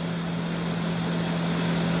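Steady mechanical hum of room machinery: one constant low tone over an even hiss.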